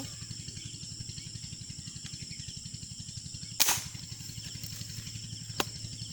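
A single sharp air-rifle shot about three and a half seconds in, firing a line-tethered spear at a fish in the creek, followed by a smaller click near the end. A low, rapid pulsing runs underneath throughout.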